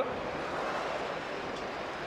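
Steady rushing noise of electric ice-racing cars sliding through a corner on snow and ice, with no engine note.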